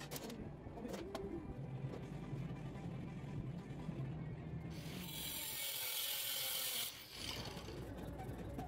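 Background music under a few light metallic clicks from steel channel being handled and clamped in a vise. About five seconds in, a loud hiss lasts roughly two seconds and then stops.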